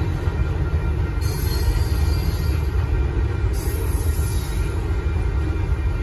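Union Pacific mixed freight train's cars rolling past over the rails, a steady low rumble of wheels and cars. A higher hissing, squealing wheel-on-rail sound comes in about a second in and again a little past the middle.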